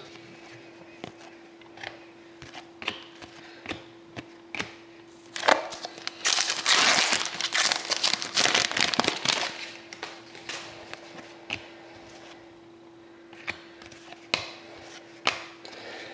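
Foil trading-card pack wrapper being torn open and crinkled, loudest in a burst from about five to ten seconds in, with light clicks and rustles of cardboard cards being handled before and after. A faint steady hum underneath.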